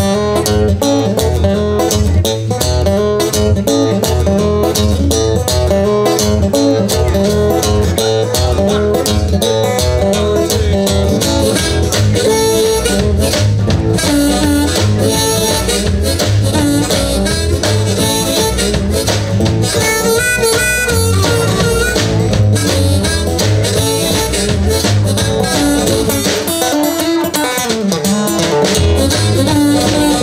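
Live blues band playing an instrumental passage: harmonica leading over acoustic guitar, upright double bass and drum kit.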